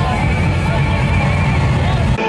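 Live street-parade sound: loud music with a heavy bass beat and the voices of costumed revelers shouting close by. A high wavering tone is held over it for most of the two seconds.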